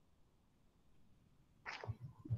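Near silence on a video-call line, with a short, faint, breath-like hiss near the end.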